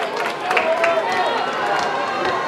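Football game crowd noise: many voices shouting and calling over one another, with a few short sharp knocks.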